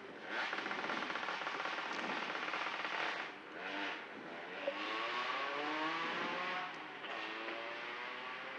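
Nissan 240SX rally car's engine running, heard from inside the car, with its note rising and bending from about halfway through as the car moves up in the queue.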